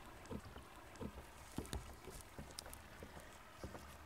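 Faint outdoor ambience with scattered, irregular soft low thumps and a few faint ticks.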